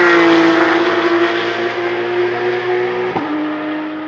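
Race car engine running steadily at high revs, its pitch dipping slightly at first and then holding, with one short sharp click about three seconds in.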